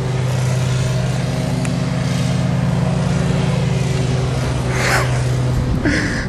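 A vehicle engine running steadily at low speed, its pitch holding even, heard from inside the vehicle.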